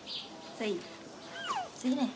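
Baby macaque giving a few short high calls that slide down in pitch, the clearest one about one and a half seconds in.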